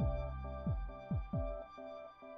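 Electronic background music: held synth chords over a deep drum whose pitch drops sharply on each hit, about three hits.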